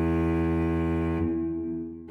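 Background music: a low, held string chord that fades away in the second half.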